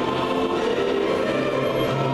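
Choral music playing, a choir singing long held notes.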